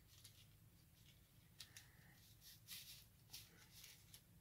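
Near silence with a few faint rustles and light clicks: the paper scales of a cardboard doll dress brushing together as it is pulled down over the doll's legs.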